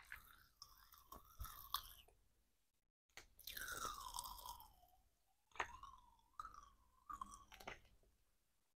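Faint close-up chewing and crunching of candy. Near the middle a drawn-out squeak falls in pitch, and later a shorter wavering squeak sounds as gloved hands handle small plastic spray bottle parts.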